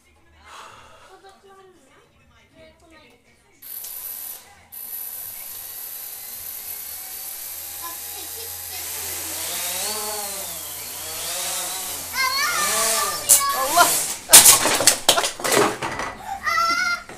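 Cheerson CX-20 quadcopter's motors spinning up about three and a half seconds in, then running with a high whine that grows louder and wavers up and down in pitch. Near the end comes a run of sharp knocks and clatters as the drone crashes indoors.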